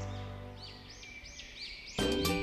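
Background music fading out, followed by a quick run of about five high bird-like chirps, each rising and falling. Music starts again abruptly at the very end.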